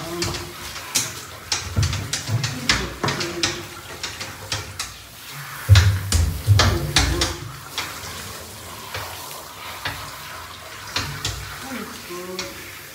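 Handheld shower spraying water onto a dog's wet fur in a bathtub, with irregular splashes, clicks and knocks as the dog is held and rinsed. A few loud low thumps come about six to seven seconds in.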